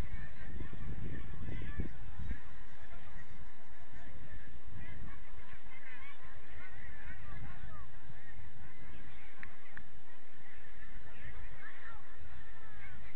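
Birds calling: a continuous chatter of many short calls that rise and fall, over a low rumble that is heaviest in the first couple of seconds.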